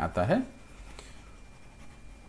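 A short spoken phrase, then faint, soft scratching and ticking of a stylus on a tablet screen as handwriting is erased.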